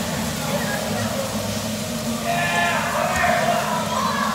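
Bumper cars running around an indoor arena with a steady low rumble. About two seconds in, a rider's voice calls out for about a second, its pitch bending up and down.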